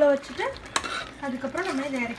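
Mustard seeds sizzling in hot oil in a small steel pot, with one sharp pop or tap a little under a second in. A voice speaks over it at the start and again near the end.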